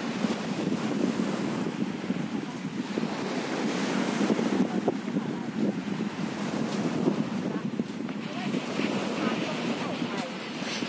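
Small waves washing onto a sandy beach, mixed with wind buffeting the microphone in a steady rushing noise.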